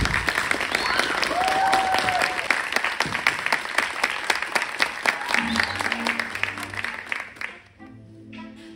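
Theatre audience applauding and cheering, with a long whoop about a second and a half in. Music with low held notes comes in partway through as the clapping dies away near the end.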